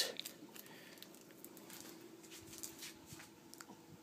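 Faint sound of a running aquarium: a low, steady hum with a light water wash and a few soft clicks of handling.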